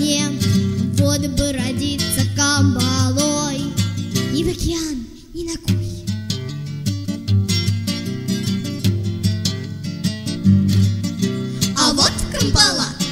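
A bard song with acoustic guitar accompaniment. Singing with vibrato runs over strummed guitar for the first few seconds. There is a short dip about five seconds in, then a strummed guitar passage without voice until the singing returns at the end.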